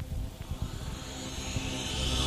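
A rumbling whoosh that swells steadily louder, with low steady tones beneath it, building up like a riser into the music that follows.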